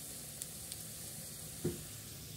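Mixed-vegetable pakoras deep-frying in hot oil in a pan: a steady sizzle with a couple of faint crackles.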